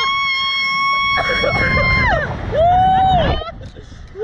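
A rider screaming: one long high scream held at a steady pitch for about two seconds, then a shorter, lower scream, with wind rushing on the microphone as the ride flies.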